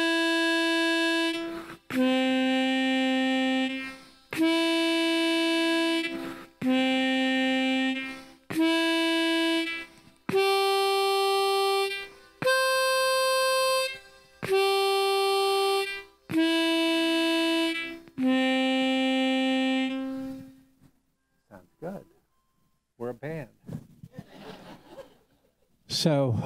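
Diatonic harmonica in C playing about ten sustained single blow notes, each close to two seconds long. The notes step among C, E, G and the high C above. Then they stop about twenty seconds in, leaving a few quiet seconds.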